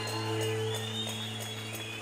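Electric keyboard holding a sustained chord: several steady notes ring through without a break.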